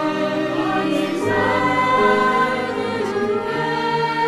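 Mixed choir of sopranos, altos, tenors and basses singing a hymn, holding long chords that change about every second.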